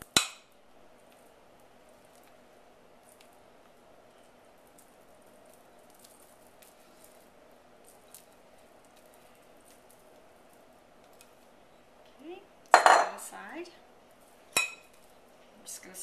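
A utensil clinks sharply against a glass mixing bowl as cream cheese filling is scraped out, followed by faint, soft scraping. About thirteen seconds in comes a louder clatter of kitchen utensils and dishes, and a single sharp click a moment later.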